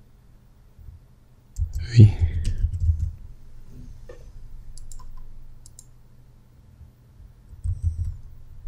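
Sparse computer keyboard key clicks as code is typed, over a low steady hum. A short murmured vocal sound comes about two seconds in and is the loudest thing heard.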